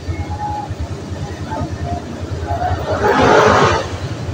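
Steady low background rumble with irregular pulsing. A brief burst of hissing noise comes about three seconds in and is the loudest sound.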